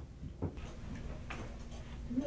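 Quiet classroom room tone: a faint steady hum with a couple of faint clicks, about half a second in and again just after one second.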